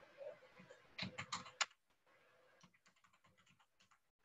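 Typing on a computer keyboard: a quick run of louder keystrokes about a second in, then a string of fainter ones.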